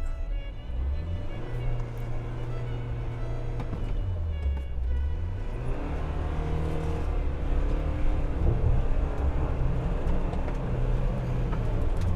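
Jeep Wrangler Rubicon's engine revving up and down again and again as it rocks back and forth, wheels spinning in soft mud, with its front differential unlocked; it is digging itself deeper into the pit. Background music plays along.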